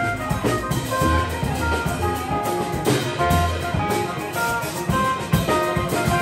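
Live jazz-funk band: a keyboard solo of quick, short notes over upright bass and drum kit, with the saxophone silent.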